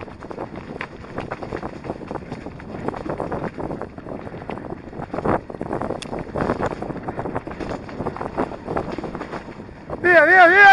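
Electric mountain bike ridden over a rough, leaf-covered dirt trail: a continuous jumble of irregular rattles and knocks from the bike and tyres over the ground, with wind buffeting the microphone.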